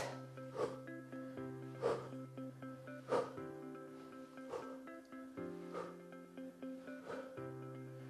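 Background music with steady held notes, over a man's short, sharp exhales about every 1.3 seconds, timed to his scissor kicks.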